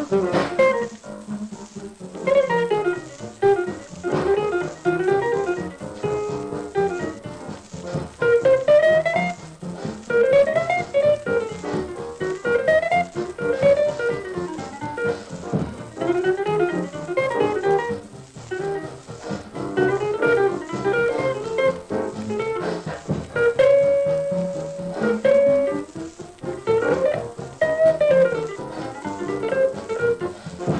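A 1946 small-group hot jazz recording playing from a 12-inch 78 rpm record on a record changer: an instrumental solo line of quick runs, with one note held briefly near the end.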